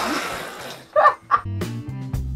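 A boy with a mouthful of water bursts out laughing and sprays it out in a sputtering hiss, followed by a couple of short laughing yelps. About a second and a half in, upbeat guitar and drum music starts.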